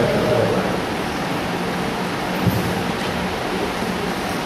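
A steady hiss with a faint low hum running under it. There is one soft knock about halfway through.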